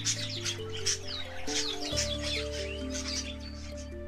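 Many birds chirping and calling, a sound effect over slow background music of held notes above a steady low bass. The chirping thins out near the end.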